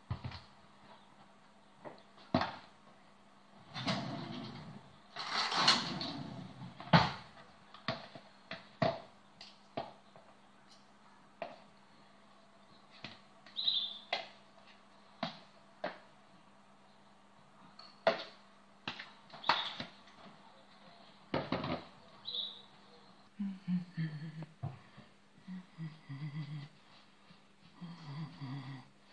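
Kitchen handling sounds: scattered taps, knocks and short scrapes as a bowl of risen yeast dough is scraped out onto a floured board and the dough is handled, with a cluster of louder scraping about four to seven seconds in.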